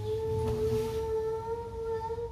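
A single voice chanting Arabic prayer recitation for a congregational prayer, holding one long note that rises slightly in pitch.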